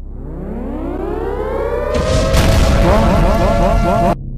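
Siren-like sound effect: a wail that rises in pitch for about two seconds and then holds steady, joined about halfway through by a heavy rumble, with everything cutting off suddenly at the end.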